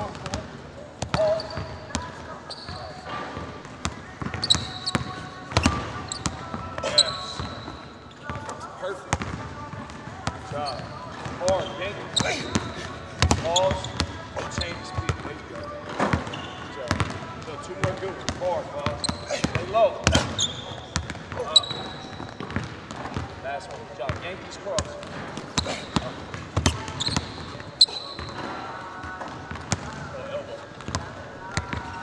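A basketball bouncing repeatedly on a hardwood court during dribbling drills, in irregular sharp bounces, with short high squeaks from sneakers on the floor.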